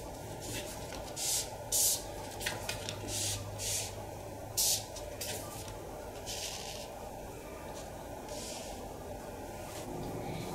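Paper fortune-telling cards being dealt and slid onto a tabletop, a series of short, separate swishes.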